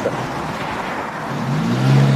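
Street traffic noise, with a motor vehicle approaching; its engine note grows louder over the last half second.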